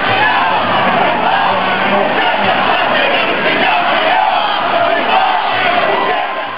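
A large crowd of street protesters shouting, many voices at once, loud and continuous.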